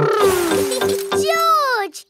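A cartoon child's gleeful cries of "whee", two long calls each falling in pitch, over bright children's background music with a steady held note and a repeating low beat.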